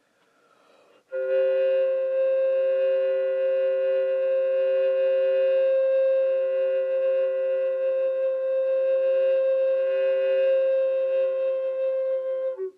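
Recorder holding one long, steady sound of two pitches at once, entering about a second in after a brief faint pause.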